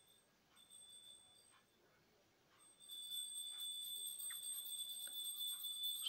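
Faint recording hiss with a thin, steady high-pitched whine, coming in about three seconds in after near silence.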